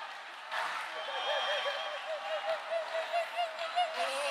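A person talking in a fairly high-pitched voice, with rapid rises and falls in pitch.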